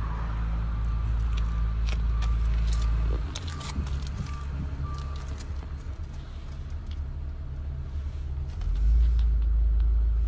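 A car engine idling with a steady low hum that shifts about three seconds in and grows louder again near the end. A short high beep repeats about once a second until about halfway through, with scattered light clicks.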